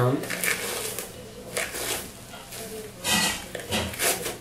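Tangle Teezer detangling brush raking through thick, coily hair in a series of short rustling strokes, the loudest about three seconds in, with no snapping of knots.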